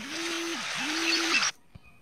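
A person's voice: two drawn-out hummed tones over a breathy hiss, cutting off suddenly about one and a half seconds in.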